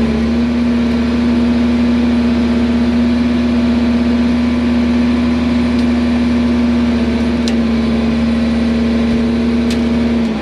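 Bulldozer diesel engine running steadily under load with a strong constant drone, heard from inside the cab, while it pulls a tile plow through the ground.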